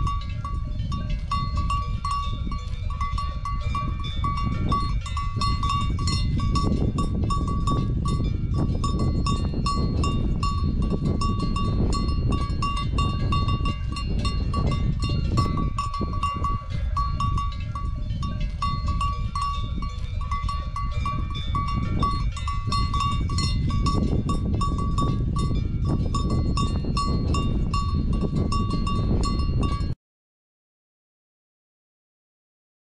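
Cattle bells clanking again and again with a ringing metallic tone, over a steady low rumble.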